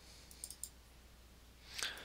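Computer mouse clicking faintly: a few quick clicks about a third of a second in, and a louder pair near the end.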